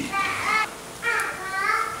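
A high-pitched voice speaking two short phrases, separated by a brief pause.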